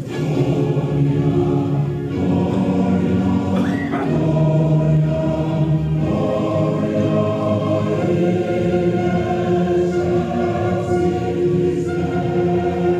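A recording of a choir singing: several voices holding long chords together, moving to a new chord every two seconds or so.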